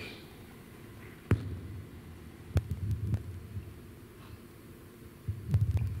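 Steady low hum from the room's sound system, with three sharp clicks spread through it. A voice starts up low near the end.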